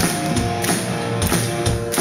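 Live rock band playing instrumentally, electric guitars holding chords over a drum kit, with drum hits about twice a second.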